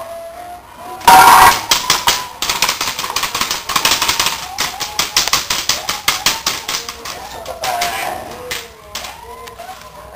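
A Belgian Shepherd puppy tugs at and chews a crumpled white rag, making rapid crinkling and rustling, with a loud sudden burst about a second in.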